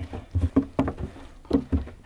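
Hands knocking and thumping on the lid of a plastic barrel minnow trap while bread is pushed in through the holes in its top: about six short knocks in two seconds.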